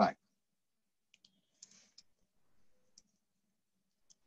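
A few faint, sharp clicks and a brief soft rustle from cord and a mesh cone being handled as knots are tied.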